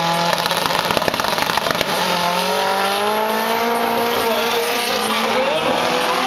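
A Lotus Elise and an Alfa Romeo launching side by side off a drag strip start line at full throttle: a rough, crackly launch noise for about two seconds, then a steadily rising engine note as they pull away down the strip.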